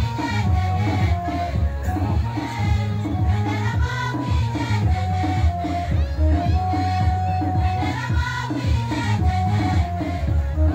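A large choir singing a Nuer gospel song, with a steady beat and a deep bass underneath.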